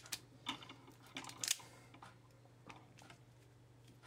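Hand ratcheting crimping tool squeezing an insulated ferrule onto a stranded wire end: a series of faint, irregular clicks, the sharpest about one and a half seconds in.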